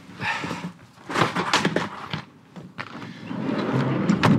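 Knocks and clatter of equipment being handled at a van's open side door, in a few short clusters, then a noise that builds toward the end.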